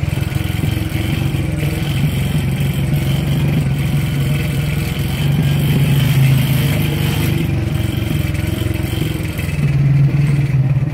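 A motor vehicle engine running steadily at low speed, growing a little louder about six seconds in.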